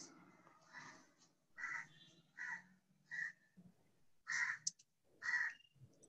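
A bird calling in the background: about six short calls, under a second apart, faint.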